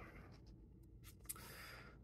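Faint rustle of book pages being turned, with a soft tick of paper about a second into the quiet.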